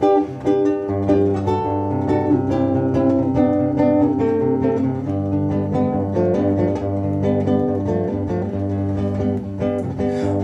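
Acoustic-electric guitar playing a plucked instrumental intro, a melody of picked notes over a steady bass line, starting abruptly.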